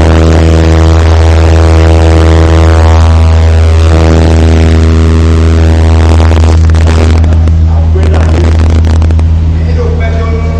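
A loud, steady electrical buzz, the hum of a public-address system, runs with its overtones and a rushing noise over it. Voices can be heard faintly beneath it.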